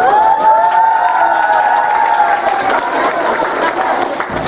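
Audience clapping, with a long, drawn-out voiced call held at one pitch for about three seconds that fades near the end.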